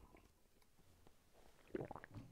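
Mostly near silence while a drink is sipped and swallowed from a mug, with a short louder sound near the end.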